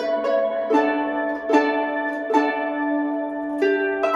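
Fullsicle lever harp played solo. Fresh notes are plucked about once a second and each one rings on over a sustained low note.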